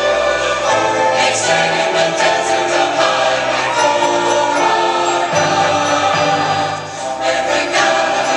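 A large choir singing with grand piano and string orchestra accompaniment: sustained chords over a moving bass line, with a light metallic shimmer now and then.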